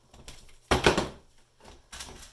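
Hammer claw prying at a stuck paint-container lid: a few faint clicks, then a sudden loud burst a little under a second in as the lid pops loose.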